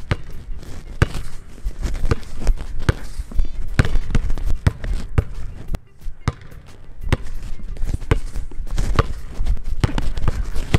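A basketball being dribbled hard on a hardwood gym floor in quick, uneven bounces, with a short lull about six seconds in.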